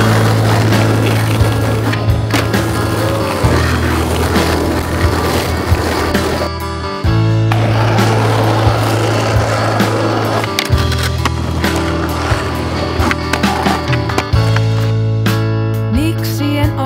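Skateboard wheels rolling over rough asphalt, with occasional sharp clacks of the board, mixed with a music track whose heavy bass line changes note every few seconds.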